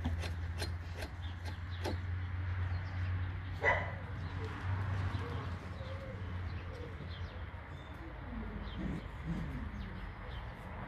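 Malinois puppies at play, with one short, sharp yelp about four seconds in over a steady low hum. Low, wavering calls come near the end.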